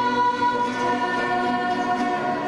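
A small group of women singing a worship song together in long held notes, with acoustic guitar accompaniment.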